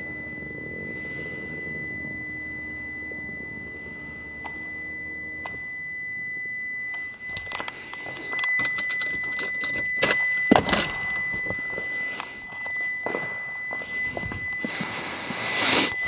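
Handling sounds of someone moving about inside a car's cabin: rustling, clicks and a few knocks, the loudest about ten seconds in, over a steady faint high-pitched tone.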